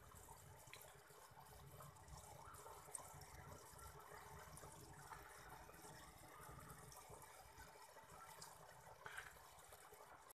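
Faint, steady trickle of water from a small aquarium filter, with a couple of light ticks.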